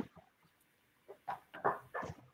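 A few faint, clipped voice syllables over a video call, starting about a second in.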